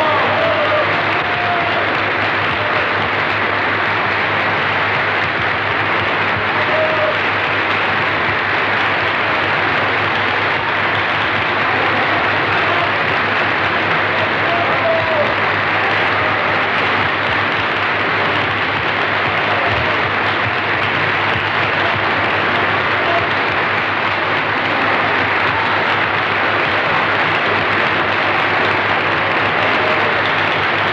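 Opera house audience applauding in a long, steady ovation that does not let up.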